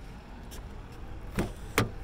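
Two sharp clicks close together near the end, the handle and latch of a 2016 Toyota Camry's driver's door as it is pulled open, over a steady low rumble of wind on the microphone.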